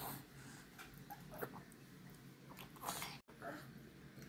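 A toddler breathing close to the microphone: a few short, noisy breaths, the loudest a little under three seconds in, with the sound dropping out for a split second just after it.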